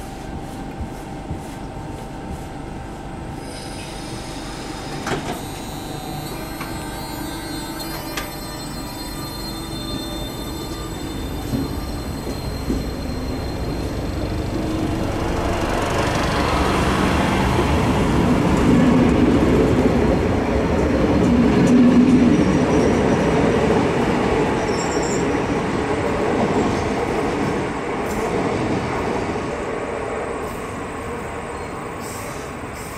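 Renfe 446-series electric commuter train at the platform, then pulling away. Its running noise builds to a peak about two-thirds of the way through and then eases off. Earlier on, high thin wheel squeal is heard, typical of this station's very tight curve.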